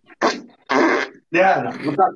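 Three rough fart sounds in quick succession, the first short and the next two longer.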